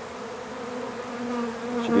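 Honey bees buzzing in a steady, even hum at one pitch: a cluster of bees shaken out of a queenless, laying-worker hive, gathered on the outside wall of a nuc box.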